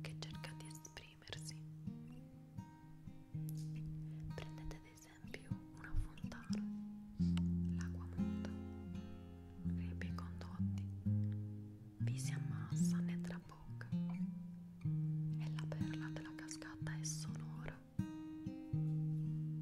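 Slow instrumental background music on a plucked string instrument: single notes and chords, each struck and left to ring out and fade, with deeper bass notes for a few seconds in the middle.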